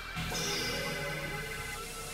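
Experimental electronic synthesizer music: several sustained drone tones layered together. A new, slightly louder layer comes in just after the start, with a brief high tone sliding downward.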